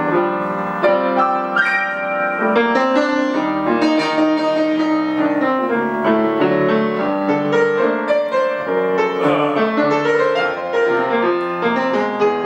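Acoustic grand piano played solo with both hands: a continuous stream of overlapping notes and chords with no pause.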